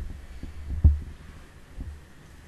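Low thumps and rumble from a desk microphone being bumped and handled. The loudest thump comes a little under a second in, and a softer one near the end.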